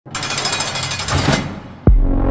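A loud, fast, harsh rattling buzz, like a jackhammer, lasts about a second and a half and fades out. Just before the end it gives way to a quick downward swoop into a deep bass hit as the song's beat drops in.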